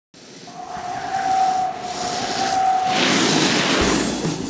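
Snowboards sliding and carving on groomed snow: a steady hiss with a thin whistle-like tone, swelling into a louder rush of spraying snow in the last second as the riders come past.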